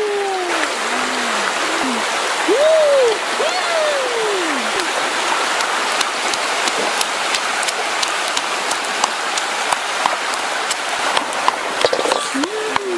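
A small fire of dry leaves and twigs crackling, with sharp cracks coming more and more often in the second half, over a steady rushing hiss. In the first five seconds several low calls rise and fall in pitch.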